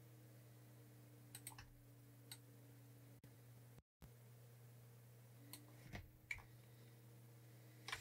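Near silence with a low steady electrical hum, broken by a few faint, scattered clicks from operating a computer; the sound drops out completely for a moment near the middle.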